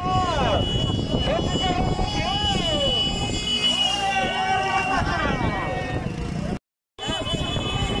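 Spectators shouting and yelling along the race road, with a motor vehicle engine running underneath. The sound drops out briefly twice at edit cuts.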